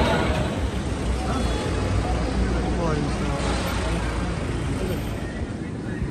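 Indistinct background voices over a steady low rumble of traffic-like ambience, easing slightly toward the end.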